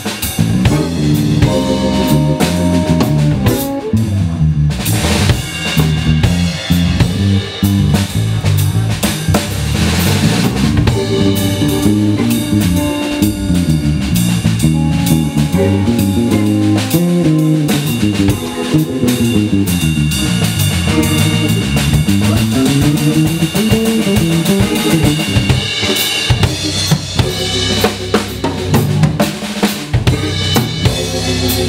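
A small live combo playing: archtop electric guitar and electric bass lines moving over a steadily played drum kit, with snare and bass drum.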